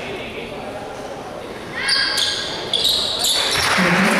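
Indoor basketball game sound: sneakers squeaking on the hardwood court about two seconds in, then crowd noise and shouts swelling near the end as play restarts after a free throw.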